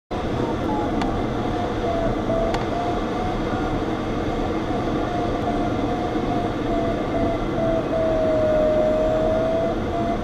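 Steady rush of airflow in a glider cockpit, with the variometer's audio tone sounding as a string of short pitched beeps and then one long held tone near the end.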